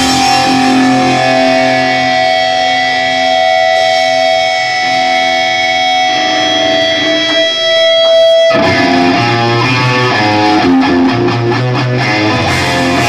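Live hardcore punk band: electric guitars hold a ringing chord, which cuts off suddenly about eight and a half seconds in, then come back with a chopped, rhythmic riff, with drum hits near the end.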